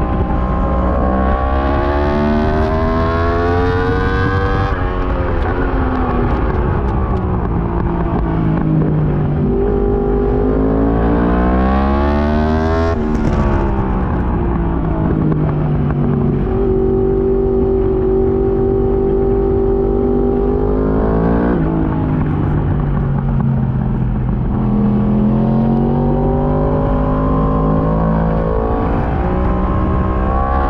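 Yamaha R1 inline-four heard from on the bike at race pace, over wind rush. The note climbs through the gears, falls under braking and downshifts, holds steady through a long corner in the middle, then climbs again near the end.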